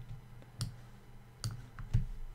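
Four sharp, brief clicks of a computer mouse, the last two close together near the end as a double-click that selects a word, over a faint low hum.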